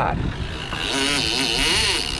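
Outboard engines running under way with wind on the microphone. About two-thirds of a second in, a steady high whine sets in: the reel's drag giving line as a big swordfish strips it against heavy drag.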